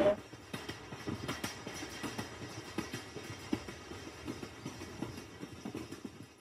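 Faint background ambience of a restaurant courtyard: distant diners' voices murmuring, with a few light knocks and clinks.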